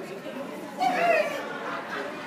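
Background chatter of people talking, with one louder voice about a second in whose pitch falls.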